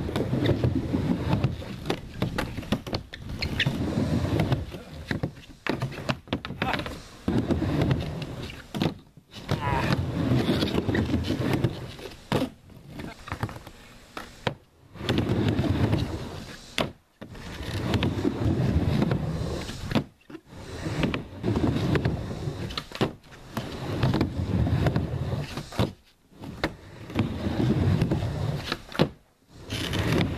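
Skateboard wheels rolling on a plywood bank ramp, the rumble swelling and fading about every three seconds as the board rides back and forth between the banks, with occasional sharp clacks from the board.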